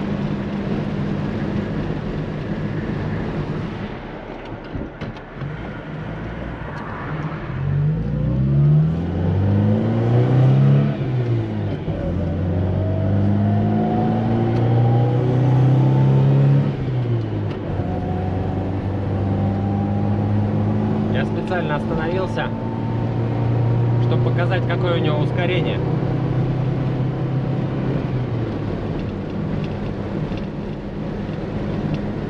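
Moskvich-403's M-412 four-cylinder engine, breathing through a freshly fitted Weber carburettor, heard from inside the cabin on the move. The engine note climbs in pitch in several runs, broken by gear changes, as the car accelerates along the highway.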